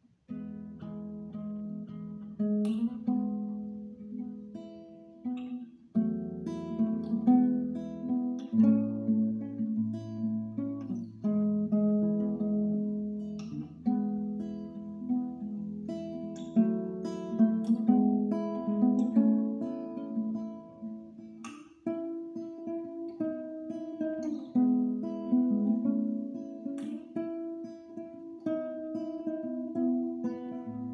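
Classical guitar played softly and gently, slow chords with notes ringing over one another, newly struck every few seconds. It is a deliberately soft, low-intensity playing.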